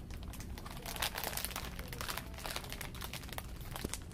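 A shiny plastic package crinkling and crackling as it is handled and carried, most densely from about a second in until halfway through.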